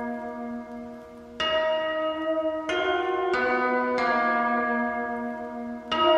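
Bell-toned melody from a trap beat, playing alone without drums or vocals: slow chiming notes, each struck and left to ring into the next.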